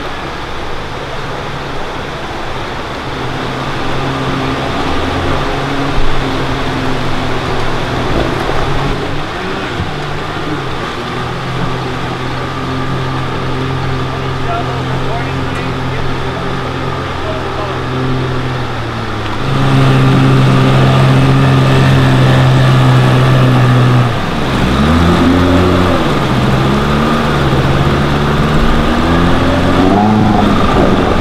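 Outboard motor on an inflatable river raft running under way, its hum holding steady and then stepping up in pitch and loudness about two-thirds of the way through. Near the end it dips briefly, then its pitch sweeps down and back up as the throttle is eased and opened again.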